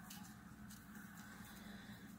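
Near silence: quiet room tone with a faint rustle or two from tulle being twisted tight with a pipe cleaner.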